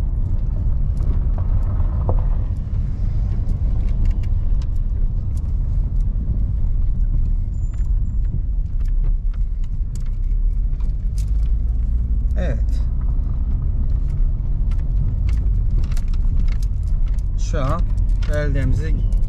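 Car driving slowly over an unpaved gravel road, heard from inside the cabin: a steady low road rumble with frequent small clicks and rattles.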